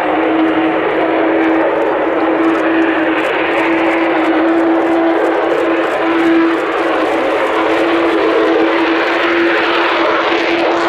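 Lockheed U-2S's single General Electric F118 turbofan at takeoff power: a loud, steady jet roar with a steady droning tone running through it, as the aircraft runs down the runway and lifts off near the end.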